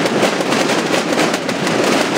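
Many snare-style Holy Week tambores beaten together by a large drum corps: a dense, continuous rattle of drumstrokes with no gaps.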